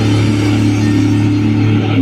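Amplified electric guitar and bass holding one low chord, ringing steadily through the stage speakers with no drums. The sound thins a little near the end.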